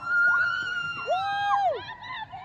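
Spectators cheering with a long, high-pitched held shout. A second, lower held shout overlaps it about halfway through.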